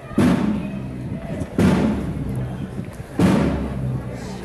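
A large drum beaten slowly, three strikes about a second and a half apart, each leaving a low ring.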